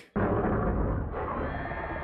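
A deep, rumbling monster roar from a horror-comedy TV soundtrack, mixed with dramatic music. It starts abruptly.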